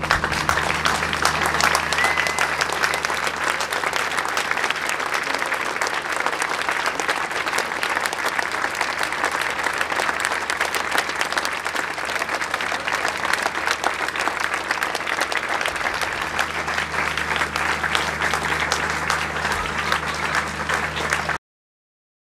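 A large crowd applauding with dense, sustained clapping over a faint steady low hum. It cuts off abruptly near the end.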